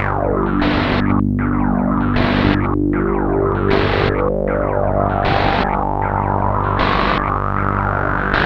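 PAiA Fat Man analog synthesizer played over a frozen loop held in a 1982 Powertran DIY digital delay line: sustained synth notes over a short glitchy pulse that repeats about one and a half times a second. In the second half a tone slides slowly upward as a synth knob is turned.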